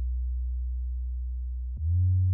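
Soloed synth bass line in Logic Pro X: a deep, pure low note, fading slowly, then a step up to a louder, slightly higher low note near the end.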